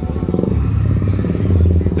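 Motorcycle engine running close by, a loud, steady low rumble.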